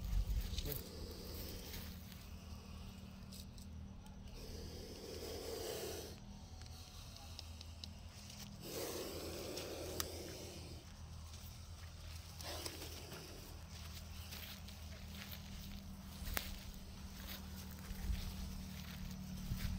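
A cobra hissing in long breaths: three of them a few seconds apart, the first two about two seconds each and the last shorter. Scattered clicks and rustles and a steady low hum run underneath.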